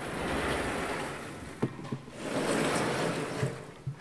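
Vertically sliding chalkboard panels being moved in their frame: two long swells of rubbing noise with a couple of knocks between them.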